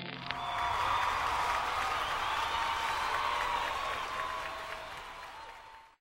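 Audience applause, a steady clapping hiss that fades away over the last two seconds.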